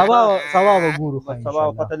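A man's voice: two drawn-out, wavering cries in the first second, then quick broken speech.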